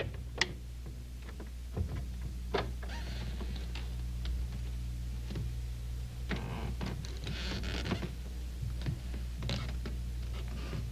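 Old film soundtrack with a steady low hum, a few scattered faint knocks and two short scraping or rustling noises.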